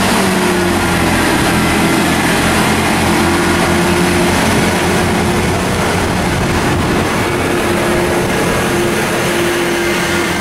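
Class 158 diesel multiple unit's underfloor diesel engines working under power as the train pulls along the platform, a steady engine drone with wheel and rail rumble as the carriages pass.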